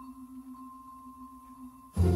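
The last held chord of an orchestral easy-listening track ringing out quietly as two steady, unchanging tones, one low and one higher. The next track comes in loudly right at the very end.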